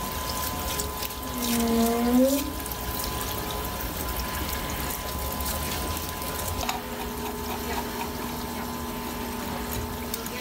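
Parts-washer pump running, with solvent streaming from its flexible nozzle and splashing over a distributor housing held in the basin. A steady hum sits under the flow and changes note about two-thirds of the way through. A brief pitched, squeak-like sound about a second and a half in is the loudest moment.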